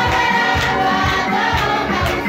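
Music in which a group of voices sings over a steady drum beat of about two beats a second.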